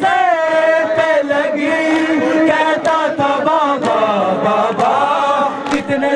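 Men chanting a noha, a Shia mourning lament, led by a reciter singing into a handheld microphone. The voice carries a continuous, wavering melodic line with only brief pauses.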